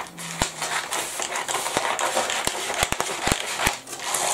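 A sheet of tracing paper crackling as it is handled and cut off the roll with scissors, with several sharp snips of the blades.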